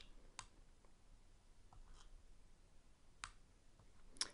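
Near silence with a few faint computer mouse clicks, the clearest about half a second in and about three seconds in.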